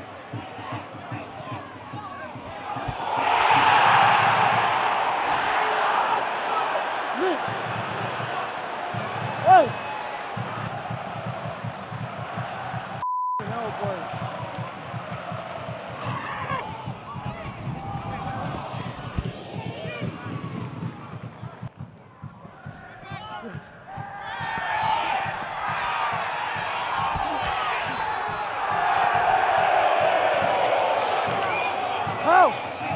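Football stadium crowd noise with scattered shouting, swelling about three seconds in and again near the end. A single sharp thud of a ball being struck comes about ten seconds in, and a brief electronic beep about thirteen seconds in.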